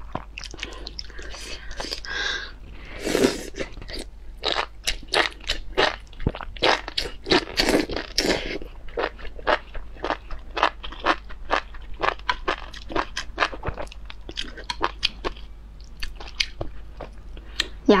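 Close-miked chewing of enoki mushrooms in chili oil: a rapid, uneven run of crisp, moist crunches, several a second.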